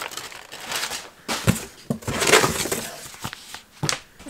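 Crumpled brown kraft packing paper crinkling and rustling as it is pulled from a cardboard box, in several bursts with a few sharp knocks.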